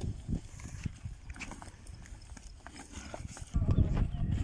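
Two desi zebu bulls fighting head to head: hooves scuffing and stamping on dry dirt and the knock of horns and heads, with a louder low rumble near the end.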